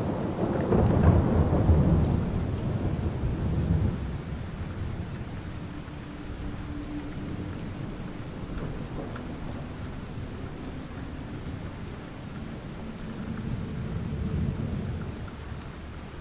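Steady rain with a roll of thunder that rumbles over the first few seconds and fades away, and a softer swell of rumble near the end.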